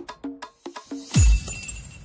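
Electronic DJ dance mix: a quick run of short, clipped pitched notes, then about a second in a loud drop, a deep bass boom sliding down in pitch together with a glass-shattering crash that rings out and fades.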